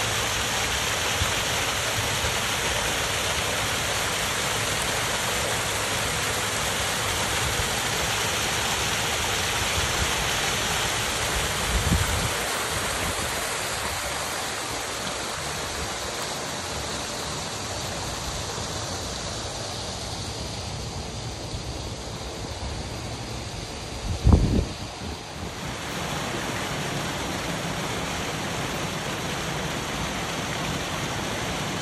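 Water rushing steadily as it cascades over rocks in a small waterfall, a little quieter through the middle. Two brief low thumps break in, about twelve seconds in and again near twenty-four seconds, the second louder than the water.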